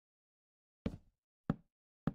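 Two sharp knocks, about two-thirds of a second apart, against dead silence.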